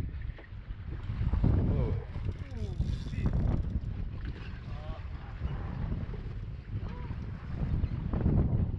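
Wind buffeting the microphone in an uneven low rumble, mixed with sea and boat noise, with indistinct voices coming and going.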